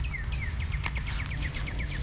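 A songbird singing a run of short downslurred whistled notes that speed up into a rapid trill and stop near the end. A low steady rumble on the microphone runs underneath.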